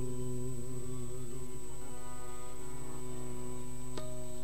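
Sikh devotional singing (kirtan): a harmonium holds a steady chord under a long sustained sung note.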